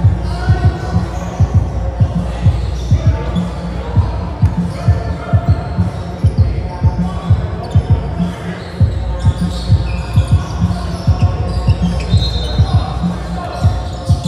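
Background music with a heavy bass beat, about two beats a second, with held melodic tones over it.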